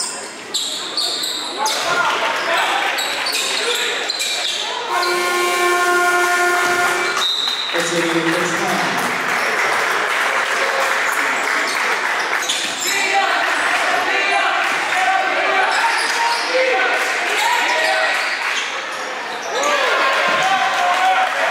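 Basketball game sounds in a school gym: ball bounces and crowd voices, with a steady scoreboard horn sounding for about two seconds around five seconds in, the buzzer for the end of the period, followed by a brief high whistle.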